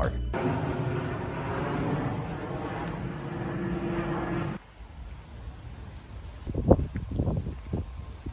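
Outdoor ambience: a steady low rumble of vehicle noise with a faint hum, which drops abruptly about four and a half seconds in to quieter open-air sound with a few short sounds near the end.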